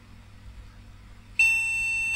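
A small speaker on a motherboard's speaker header sounding one long, steady beep, starting about one and a half seconds in. It is the BIOS POST beep code saying that no RAM is detected, with the memory removed from the board.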